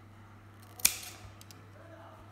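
Metal sewing scissors closing once in a single sharp snip about a second in, cutting a small notch into the edge of fabric as a matching mark, followed by a few faint ticks.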